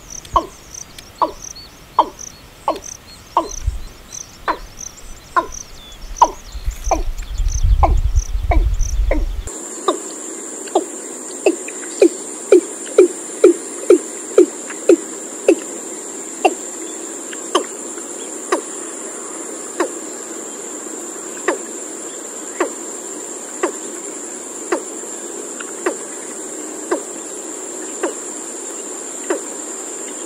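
A series of short, low, hollow notes, at first evenly paced about two or three a second over a low rumble. About a third of the way in the sound changes abruptly: a steady high cricket trill starts, and the notes go on over it, coming faster for a few seconds and then spacing out.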